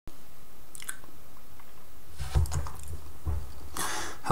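Steady microphone hiss with a few soft bumps and a click, then a breath drawn near the end, just before speech begins.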